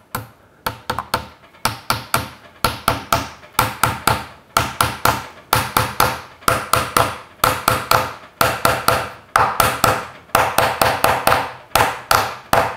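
Small hammer tapping glued wooden wedges into a wedged mortise-and-tenon joint, alternating between the two wedges, in a steady run of sharp ringing taps at about three to four a second. The pitch of the taps changes as the wedges drive home and the tenon spreads tight.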